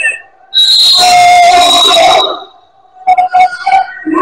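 A referee's whistle blown in one long, high blast of about a second and a half, starting about half a second in.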